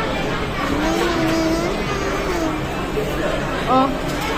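Indistinct voices and chatter over the steady background din of a busy fast-food restaurant, with a short louder voiced sound near the end.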